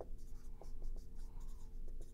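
Dry-erase marker writing on a whiteboard: short, faint strokes and small ticks as letters are written, over a steady low hum.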